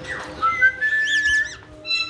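Caique parrots whistling and chirping: a short rising run of clear whistled notes, held on the top note, with quick high chirps over it.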